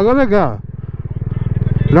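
Motorcycle engine running with a low, even pulsing beat that grows louder over about a second and a half, after a short voiced exclamation at the start.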